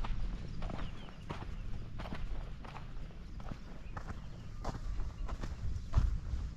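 Footsteps crunching on dry, loose earth at a walking pace, about two steps a second, over a low rumble.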